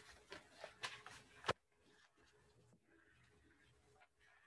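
A few light clicks and taps in the first second and a half, the last one the loudest, then near silence with faint room tone.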